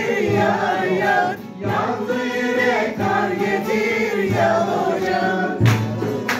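Male voice singing a Turkish folk song (türkü) from Sivas with long, ornamented held notes, accompanied by a bağlama, with a brief pause for breath about a second and a half in. A handclap comes in near the end.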